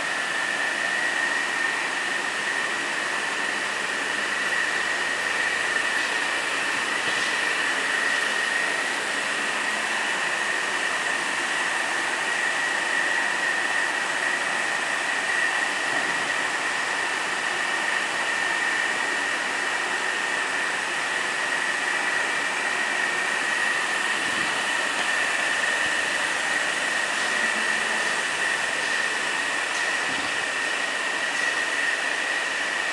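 Steady hiss with a constant high-pitched whine, unchanging throughout.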